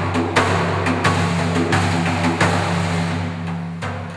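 Large frame drum struck by hand in a slow, steady beat, about one stroke every 0.7 seconds, over a deep sustained drone. It grows quieter near the end.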